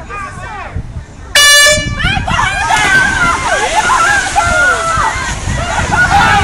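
A loud air horn blast about a second and a half in, held for about half a second: the start signal of a swimming race. Water splashing from the swimmers follows, with many people shouting and cheering over it.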